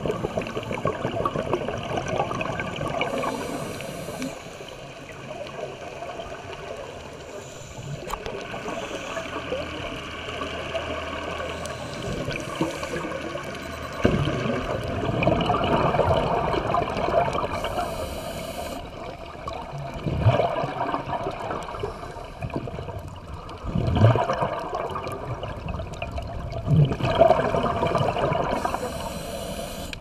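Underwater sound of a scuba diver breathing through a regulator: exhaled air bubbles gurgle and rush past in surges every few seconds, with brief hisses between them.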